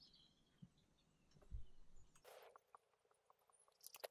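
Near silence, with a soft thump and a run of faint, evenly spaced ticks from a car's scissor jack being wound up by its hand crank.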